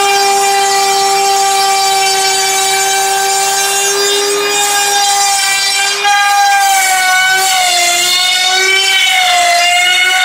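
Small trim router running at full speed, its motor giving a steady high whine. From about six seconds in the pitch sags and wavers as the bit is pushed through the foam, cutting a channel.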